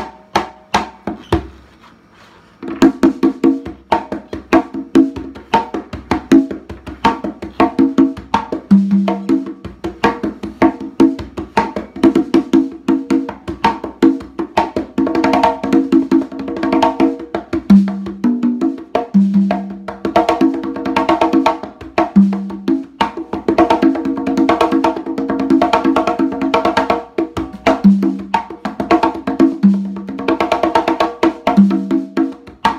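Hand-played congas (LP Galaxy fiberglass and ash-wood tumbadoras): a few light strokes, then from about three seconds in a fast, unbroken flow of slaps and tones. Now and then a lower note rings out over the rapid strokes.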